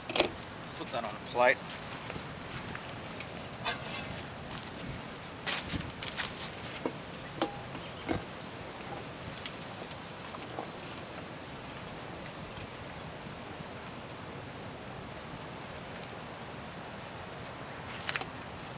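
Knife and pan knocking and scraping on a hard plastic cooler lid: a run of sharp knocks and clicks over the first several seconds, with a brief voice-like sound about a second in. After that only a steady outdoor background remains.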